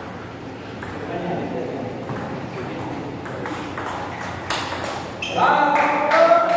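Table tennis rally: the plastic ball clicking sharply off the bats and table several times at uneven intervals. A loud voice calls out near the end.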